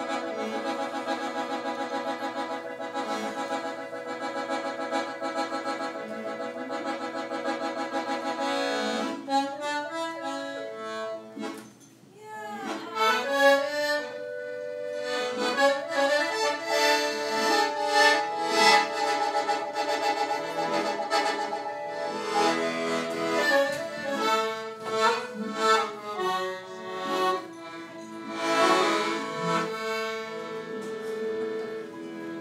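Live music: a reedy chord held steady for about nine seconds, then after a brief drop a busier passage of shifting, bending pitches.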